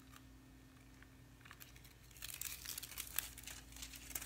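Thin plastic sheets of nail-art transfer foil crinkling as they are handled, starting about two seconds in after a quiet start.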